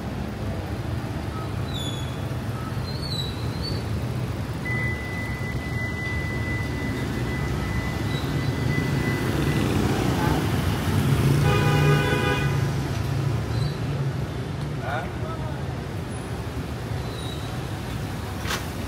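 City street traffic with motorbikes and cars passing on a wet road, growing louder as vehicles go by. A vehicle horn sounds once for about a second partway through.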